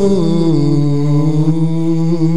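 A man's voice holding a long sung note. It slides down in pitch about half a second in, then holds and starts to waver with vibrato near the end.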